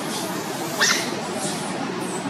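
A baby macaque gives one short, high squeak that rises quickly in pitch, just under a second in, over steady outdoor background noise.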